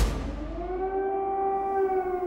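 An air-raid siren: one long wail that rises in pitch over the first second and then holds steady.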